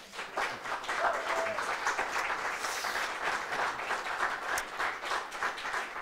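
Audience applauding: many hands clapping in a dense, steady patter that starts just after the start and eases off near the end.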